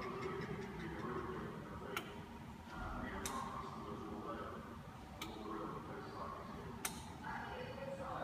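Four sharp single clicks at uneven intervals, one to two seconds apart, as the model's lights are switched from a wireless touchscreen tablet, over a low murmur of voices.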